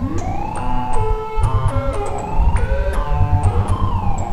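Live electronic music from hardware synthesizers and a sampler: pitched tones swooping up and down in siren-like glides over a pulsing low bass, with scattered sharp ticks.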